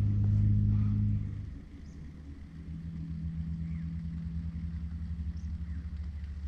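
A low, steady droning hum from a science-fiction UFO sound effect. It is loud for the first second or so, then drops to a softer hum with a fast low pulsing, and a second held tone joins a couple of seconds in.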